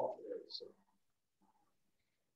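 A man's voice trailing off at the end of a word, two brief low sounds right after it, then dead silence.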